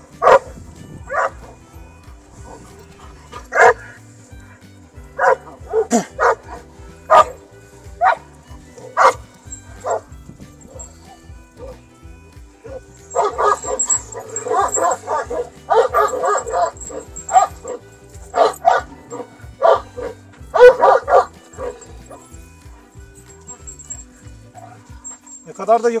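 Large Turkish shepherd dogs barking: single sharp barks a second or two apart at first, then longer, denser bouts of barking about halfway through as the dogs wrestle each other, over background music with a steady low beat.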